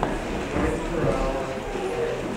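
Indistinct chatter of people talking among themselves, with footsteps knocking on a hard floor.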